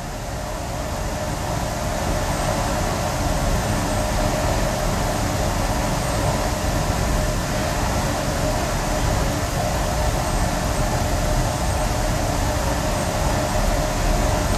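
Steady rumbling machine noise from running lab equipment, building up over the first couple of seconds and then holding even.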